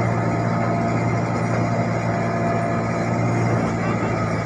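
Komatsu crawler excavator's diesel engine running steadily, an even low drone.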